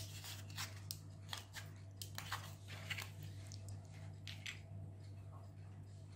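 Faint scattered clicks and crackles of small 3D-printed plastic parts being handled, over a steady low hum.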